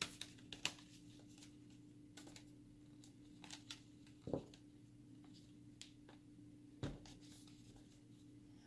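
Quiet, steady low hum with a few light clicks and taps of hands handling a laptop and its loosened service-panel screw, the two clearest taps about four and seven seconds in.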